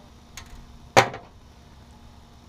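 A single sharp knock about a second in, with a few faint clicks just before it, from handling in the boat.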